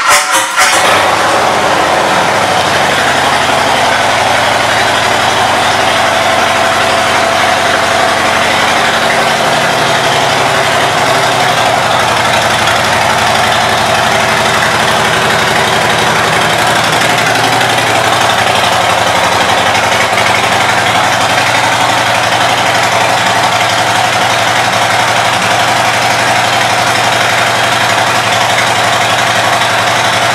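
Harley-Davidson Fat Boy 114's Milwaukee-Eight 114 V-twin firing up and idling loudly through Vance & Hines aftermarket pipes. The idle eases down a little over the first ten seconds or so, then holds steady.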